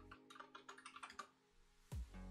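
Quick typing on a computer keyboard, a rapid run of key clicks that stops about a second and a half in, followed by a single low thump near the end.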